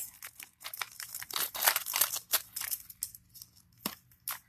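A small plastic bag rustling and crinkling as it is handled: a quick run of short crackles that thins out after about two and a half seconds, with one last sharp click near the end.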